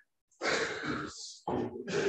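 A person's short, breathy, non-speech vocal sound, starting about half a second in and lasting under a second, with another starting near the end.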